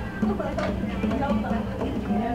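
A person's voice without clear words, with little or no drumming heard.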